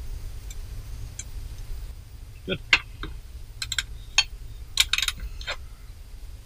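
Scattered metallic clicks and clinks of wrenches and sockets on the fuel filter's banjo bolts as they are snugged down, starting about halfway through, over a low steady rumble.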